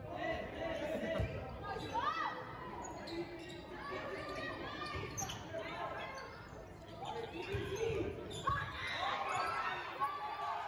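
Indoor volleyball rally: the ball is struck several times, each hit a short thud, echoing in a large gym, while players shout and call throughout.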